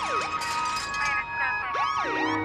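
Techno breakdown with the kick drum and bass gone: siren-like synthesizer tones swoop up and down in pitch over steady held synth chords.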